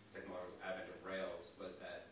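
Speech: a man talking continuously in a small room.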